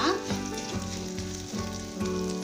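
Sliced onions, curry leaves and dried red chillies sizzling in hot oil in a non-stick pan while they are stirred: the tempering stage of frying.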